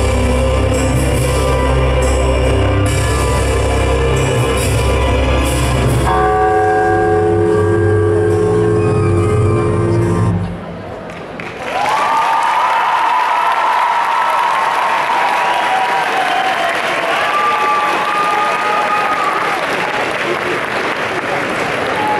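Performance backing music with deep bass and long held tones, which stops about ten seconds in. After a short lull, an audience applauds and cheers loudly until the end.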